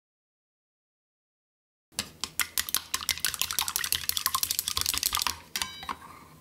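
Chopsticks beating eggs in a stainless steel bowl: fast, dense clicking of the chopstick tips against the metal, starting about two seconds in. The last few strikes make the bowl ring briefly.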